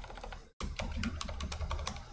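Typing on a computer keyboard: a quick run of key clicks.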